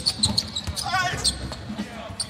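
Basketball dribbled on a hardwood court during live play: a few short knocks of the ball on the floor.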